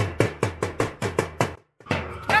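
A toy drum beaten with a stick in a quick, even beat of about five strikes a second. The beat breaks off abruptly about a second and a half in.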